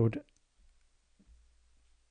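A spoken word ending just at the start, then near-quiet room tone with a faint low hum.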